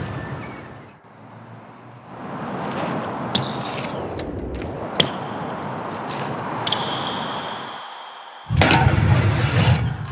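BMX bike being ridden: a rolling hiss of tyres with a few sharp clicks and knocks, a thin high squeal for about a second around seven seconds in, and a sudden loud rough scraping or impact about eight and a half seconds in.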